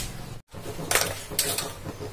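Three short metallic clinks of kitchen utensils against steel cookware, about half a second apart.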